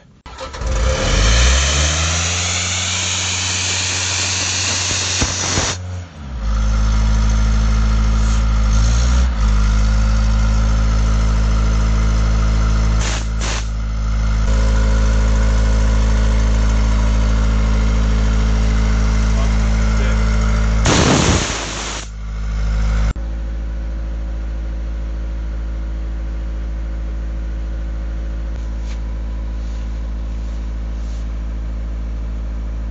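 Atlas Copco XAS portable diesel air compressor running while the air spade is test-fired. A loud blast of compressed air lasts about five seconds as the engine speeds up under the load, then the engine runs hard and steady. A second short blast comes around twenty seconds in, and a moment later the engine drops to a lower steady speed.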